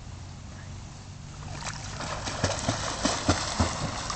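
Swimming-pool water splashing and sloshing as a child dives headfirst under the surface. It starts about one and a half seconds in, grows louder, and has a run of sharp splashes in the second half.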